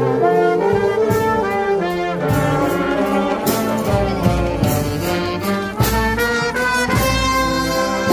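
School marching band playing a tune on trumpets, trombones and other brass with woodwinds, the notes changing in a steady march rhythm; a heavier low beat joins about two seconds in.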